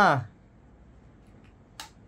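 The end of a spoken word in the first moment, then a quiet room broken by one short, sharp click just before the end.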